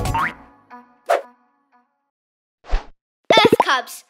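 A children's cartoon song ends on its last chord with a quick rising slide and fades out. A few short, separate cartoon sound effects follow, then a brief burst of cartoon voice near the end.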